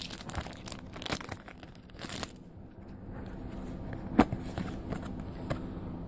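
Foil Pokémon trading card booster pack being torn open and crinkled, with dense crackling for about the first two seconds, then quieter rustling and one sharp click about four seconds in.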